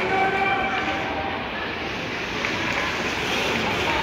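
Ice hockey rink during play: a steady wash of skates on ice and general arena noise, with a raised voice calling out in the first second.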